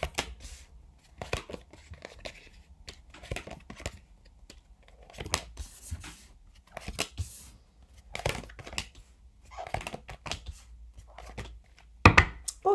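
Oracle cards being dealt from the deck and laid one by one on a table: a string of short slaps, flicks and slides of card on card and card on tabletop.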